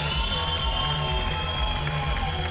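Background music with a steady beat and long held notes.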